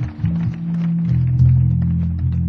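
Live jazz-fusion band music from an audience recording, dominated by low electric bass notes. A few short plucked notes are followed by long held low notes from about a second in.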